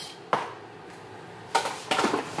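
A single sharp knock about a third of a second in, then quiet room tone, then a short clatter near the end.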